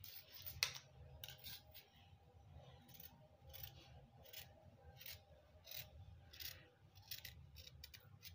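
Fabric scissors cutting through folded cotton fabric: a run of faint, unevenly spaced snips as the neckline is cut out.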